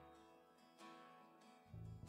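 Soft acoustic guitar strumming the opening chords of a song, with a low bass sound coming in near the end.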